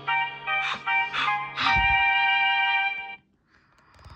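A short game music jingle of several sustained notes with a few sharp attacks, played through a device speaker. It cuts off abruptly about three seconds in.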